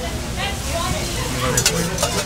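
Food sizzling as it fries on a flat griddle, with a metal spoon scraping and stirring in a metal strainer as meat is pressed and drained; a few sharp metal clinks about one and a half seconds in.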